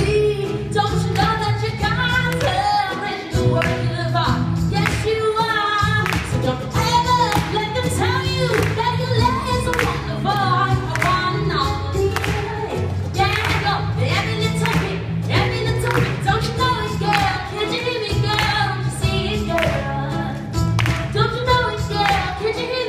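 A woman singing a pop song live into a microphone, backed by a band with electric guitar and a steady bass and beat, as heard from the audience in a theatre.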